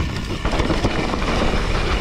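Propain Tyee mountain bike riding down a steep, rooty dirt descent: tyres scrabbling over roots and soil while the bike rattles through a fast run of small knocks, with rumble on the camera microphone.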